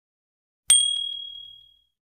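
A single bright bell ding, the notification-bell sound effect of a subscribe-button animation, struck sharply about two-thirds of a second in and ringing away over about a second.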